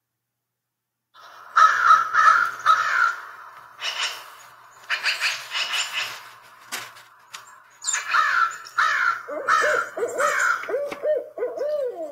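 A recording of a barred owl hooting its "who cooks for you" call among other birds calling, starting about a second in as a series of repeated calls.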